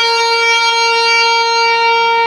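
Electric guitar note pulled off from a tapped 15th fret down to the 12th fret right at the start, then held steadily with long sustain.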